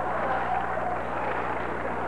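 Studio audience laughing, a steady wash of many voices that slowly fades.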